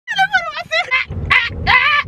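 A woman's high-pitched squealing screams: several short, wavering cries, then a longer one near the end that rises and holds.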